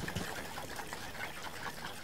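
Faint sloshing of liquid in a stoppered glass Erlenmeyer flask being shaken hard over zinc amalgam granules.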